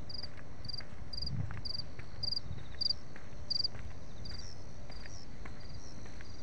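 Field cricket chirping steadily, about two short pulsed chirps a second. A second, slightly higher-pitched cricket chirps alongside it in the last couple of seconds.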